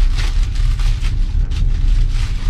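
Plastic packaging crinkling and tearing as a gift bag is opened by hand, over the steady low rumble of a moving passenger train.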